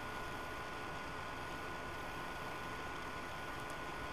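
Steady hiss with two faint, constant high tones: the background noise of a laptop's built-in microphone, with no speech or music.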